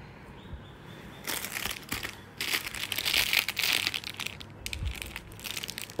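Clear plastic packaging crinkling as it is handled, starting a little over a second in, with a short break about a second later.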